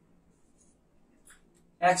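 Marker writing on a whiteboard: a few faint, short strokes in a lull before the voice comes back near the end.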